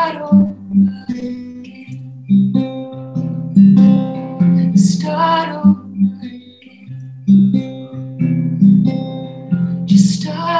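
A woman's song to her own acoustic guitar: chords struck about once a second and left to ring, with her voice coming in for short sung phrases about halfway through and again near the end.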